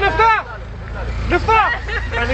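Men's voices chanting and calling out in a group, over a steady low rumble.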